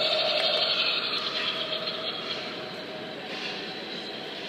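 Steady store background noise: a constant hum under an even hiss, a little louder in the first second and then easing off.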